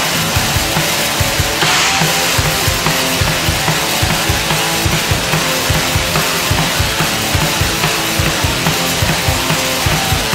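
Raw black metal played instrumentally: a dense wall of distorted guitar over a fast, steady drum beat, with a cymbal crash about two seconds in.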